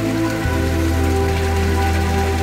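Water pouring from a wooden spout and splashing onto rocks, a steady hissing splash, under slow ambient music with held chords.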